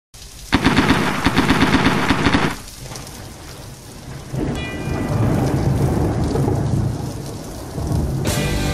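Thunderstorm sound effect: a loud crackling thunderclap about half a second in, lasting about two seconds, then a low rolling rumble of thunder with rain from about four seconds in.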